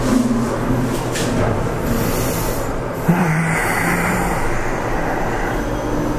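Steady low rumble and hum of an elevator cabin in motion, with a brief airy hiss about two seconds in.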